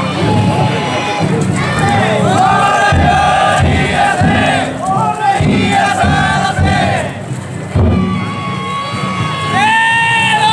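A large group of danjiri float carriers shouting together in long, drawn-out rhythmic calls, one after another, as they shoulder and carry the float.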